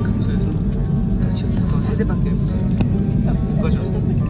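Steady low rumble inside the cabin of a Korean Air Airbus A330 as it taxis, with faint voices and music over it.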